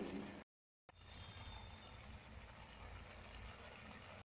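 A short held tone at the very start, cut off, then a faint steady hiss of chicken curry simmering in the pan.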